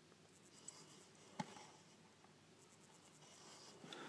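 Near silence with faint rustling of small things being handled, and one short sharp click about a second and a half in.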